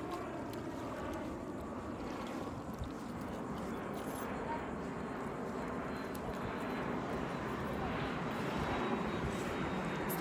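Wind rumbling and buffeting on a phone's microphone outdoors, a steady rushing noise with uneven low rumble, growing a little louder near the end.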